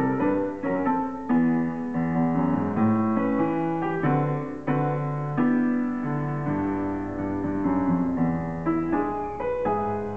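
Solo grand piano being played: a steady run of melody notes over left-hand chords, with no other instruments.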